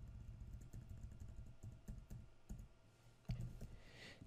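Faint clicks of a computer keyboard: a run of repeated key presses while text is deleted and retyped.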